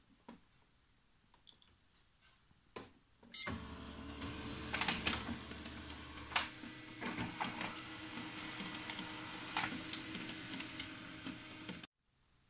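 A few clicks of buttons pressed on a multifunction printer's keypad, then about three and a half seconds in the laser printer starts copying. Its motors run with a steady hum and a held tone, with clicks and clacks of the mechanism scattered through, until the sound cuts off just before the end.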